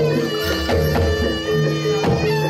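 Live traditional Indonesian ensemble music accompanying a dance: repeating held pitched notes over a low drum.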